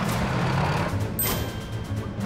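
Cartoon soundtrack of a drill tank: a low rumbling, rapid clatter under background music, with a brief high thin whine a little past the middle.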